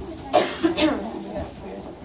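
A person coughing twice in quick succession, over low chatter in the room.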